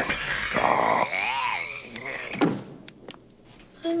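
Movie creature sound effects: growling and warbling cries from a group of small monsters, then a single thud about two and a half seconds in.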